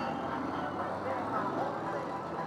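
Motorcycle engine running as a bike rolls up, with indistinct voices talking in the background.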